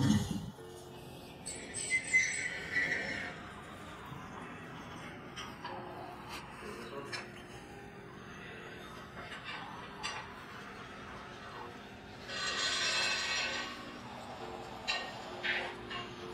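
Faint, muffled recording of a stiff metal yard gate being forced open: a short high sound about two seconds in, then a louder scraping rush as the gate drags, about twelve seconds in. It takes a grown man some effort to open.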